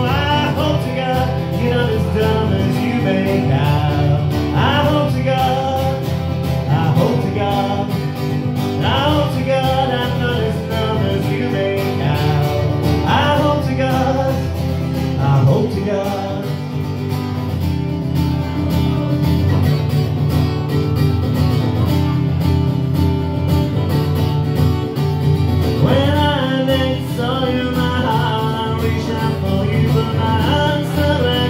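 A man singing a song while strumming a guitar, amplified through a microphone.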